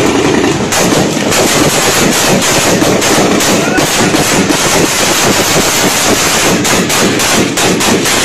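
Sustained gunfire from an armed encounter, many shots in quick succession, loud throughout.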